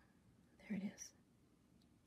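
A woman's brief low muttered word or two about half a second in, in an otherwise quiet room.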